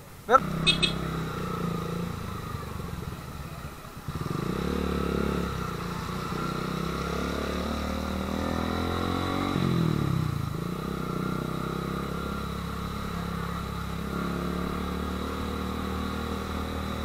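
Motorcycle engine running at a standstill, then pulling away about four seconds in and riding on, its pitch rising and falling with the throttle.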